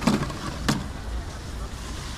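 Plastic containers knocking as they are handled and tipped into a plastic bag: a sharp knock at the start and another under a second in, over a steady outdoor background hum.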